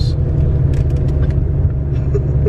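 A car driving uphill, heard from inside the cabin: a steady low rumble of engine and road noise.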